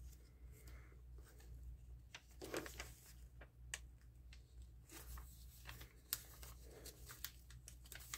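Faint rustling of glossy magazine paper being handled and pressed flat by hand onto a glued journal page, with a few soft clicks and taps.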